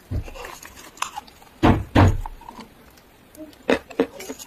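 Crunchy bites and chewing of crumbled chalk eaten off a spoon: a few sharp crunches, the loudest a pair a little under two seconds in, with another near the end.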